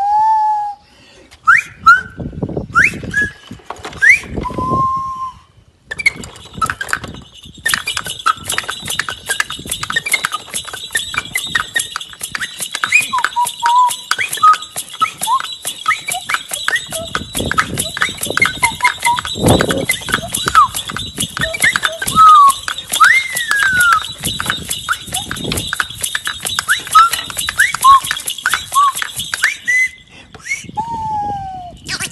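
Bird-like whistled chirps with quick rising glides, then from about six seconds in a dense chorus of chirps and twitters over fast, steady crackling.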